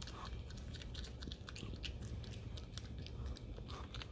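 Prehensile-tailed porcupine chewing a small piece of food held in its front paws: a quick, irregular run of small crisp crunches.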